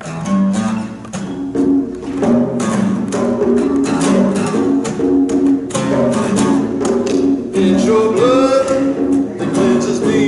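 Acoustic guitar strummed in a steady rhythm, playing the opening chords of a song as an introduction before the singing begins.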